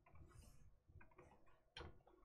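Faint clicks of a computer mouse and keyboard, a few short ones spread over two seconds, the clearest a little before the end.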